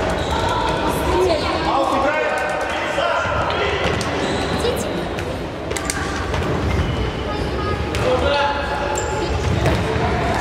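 A futsal ball being kicked and bouncing on a wooden indoor court, with repeated sharp knocks that echo around a large hall, over players' voices calling out.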